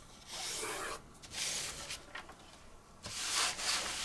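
A plastic pattern-making ruler sliding and scraping across a sheet of drafting paper in three short strokes as it is repositioned.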